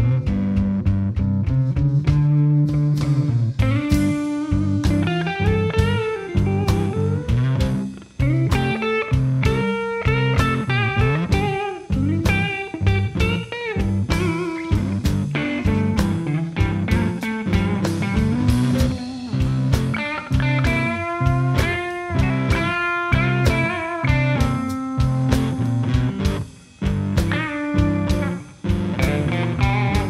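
Live blues band playing an instrumental passage: electric guitars over a steady drum beat, with a guitar line of bent notes.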